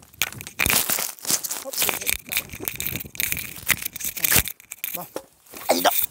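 Rummaging by hand through a pile of discarded junk: plastic sheeting and loose debris rustling, shifting and scraping, with irregular small knocks.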